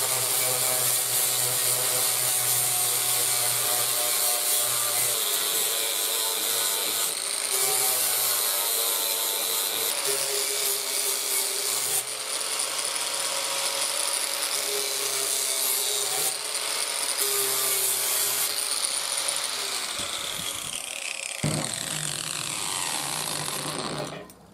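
Angle grinder running with a steady high whine and a harsh rasp as its disc grinds the edge of a steel mower blade. About twenty seconds in it is switched off and the whine falls as the disc spins down.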